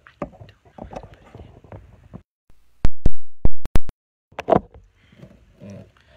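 A quick run of five or six very loud knocks close to the pulpit microphone, all within about a second near the middle, loud enough to clip.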